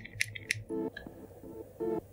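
Sharp key clicks from an iPhone XR's lock-screen passcode keypad as digits are tapped in, several in the first second, with faint music underneath.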